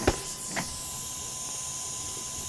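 Steady hiss with a thin, faint steady tone under it, broken by two short clicks in the first second.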